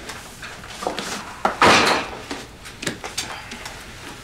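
Handling sounds of a bag or case and nearby objects: several short clicks and knocks, with a longer sliding or scraping sound about a second and a half in.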